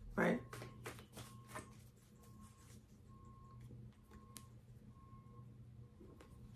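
Tarot cards being handled and drawn from the deck: a few soft card flicks and rustles in the first two seconds, then only faint handling and room hum, with one small click about four seconds in.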